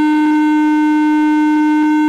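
Public-address microphone feedback: one loud, dead-steady howling tone with a rich stack of overtones that sets in out of the speaker's voice, holds without wavering and dies away.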